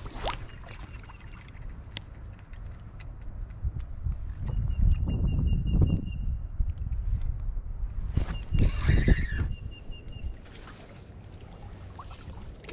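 A hooked fish is reeled in to the shallow bank, with low rumbling wind and handling noise, scattered small ticks and a splashy burst about nine seconds in. A thin, high steady whistle sounds twice.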